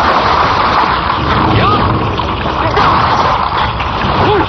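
Martial-arts film fight soundtrack: a loud, continuous mix of action sound effects and music, with a few short vocal cries from the fighters.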